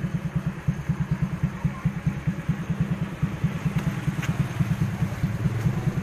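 Suzuki Raider motorcycle engine idling with a steady, even low pulse, running on oil treated with Restor Oil Mechanic additive.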